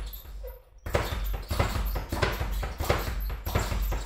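Speed bag being struck with single punches, the bag rattling against its wooden rebound board in a steady rhythm of quick knocks. The striking breaks off just after the start and picks up again about a second in.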